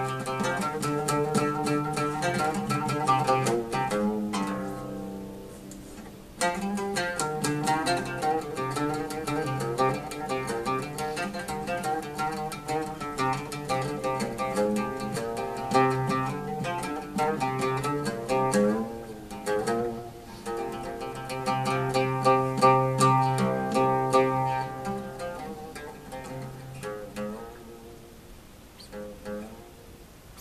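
Oud played solo, improvising in the style of Azerbaijani mugham: quick runs of plucked notes on the fretless lute, each note ringing. About five seconds in the notes die away briefly before the playing picks up again, and near the end it grows quieter.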